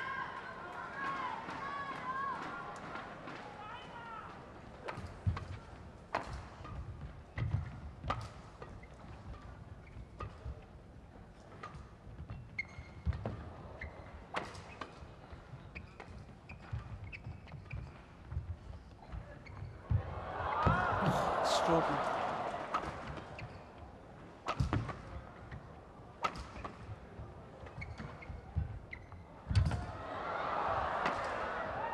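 Racket strikes on a shuttlecock during a long badminton rally: sharp cracks, one every second or so, echoing in a big hall. Crowd voices rise at the start, and the crowd cheers loudly about twenty seconds in and again near the end.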